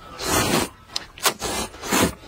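A man slurping hot and sour noodles from a bowl: one long slurp near the start, then four shorter slurps.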